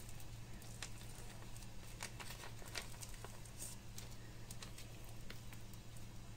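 Faint crinkling and small crackles from a foil marinade sachet as it is squeezed and pressed to push out the last of a thick paste, over a steady low hum.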